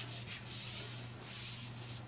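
Felt rubbing across a whiteboard in several soft strokes, dry-erase work at the board, over a faint steady hum.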